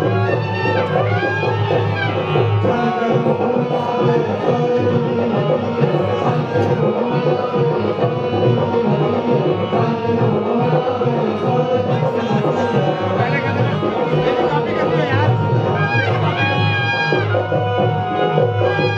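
Indian folk dance music: hand drums keep a steady rhythm under a gliding melody line.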